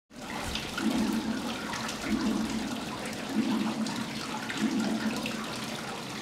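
Running, trickling water with many small drips and clicks, and a low tone that swells and fades four times at even spacing.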